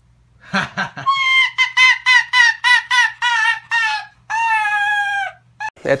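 A brief human laugh, then a pet joining in with a rapid string of short, high-pitched laugh-like calls, about four a second. It ends in one long, slightly falling call.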